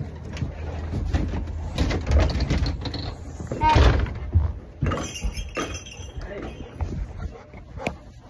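Handling noise from a phone's microphone rubbing and bumping against clothing or a hand: rumbling, scraping and knocks, with a short high-pitched voice sound about halfway through.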